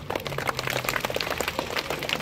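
A small group of children clapping their hands: many quick, uneven claps.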